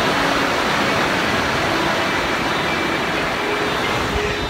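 Ocean surf breaking and washing up a sandy beach, a steady rushing noise.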